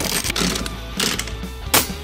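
Background music with rapid mechanical clicking and rattling over it, and a short loud rush of noise near the end.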